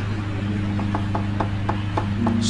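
Evenly spaced wooden knocks, about three a second, from a wayang dalang's cempala striking the wooden puppet chest. Beneath them a low tone is held for over a second over a steady electrical hum.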